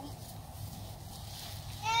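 Faint outdoor background with a low steady rumble, then near the end a child's high-pitched voice rising.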